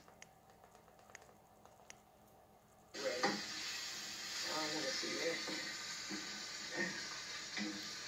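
About three seconds of near silence with a few faint clicks, then a video's soundtrack playing through a TV cuts back in suddenly: a steady hiss with faint, muffled talk.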